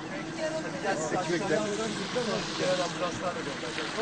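Indistinct voices of several people talking, over a steady background hiss.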